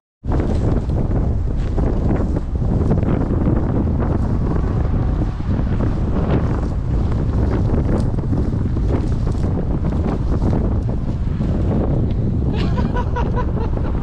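Wind buffeting the camera microphone in a steady, loud low rumble, with rustling and brushing of dry grass as the camera moves through it.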